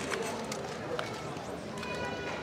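Indistinct chatter of a crowd of people talking at once, with a few sharp clicks.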